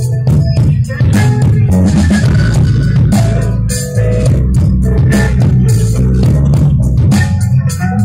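A live rock band playing through a PA system: electric bass guitar, electric guitar and drum kit, with steady drum strikes over a heavy bass line.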